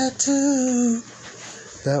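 A man singing unaccompanied doo-wop vocables in long held notes, the last one sagging slightly in pitch and stopping about halfway through; a short spoken word comes near the end.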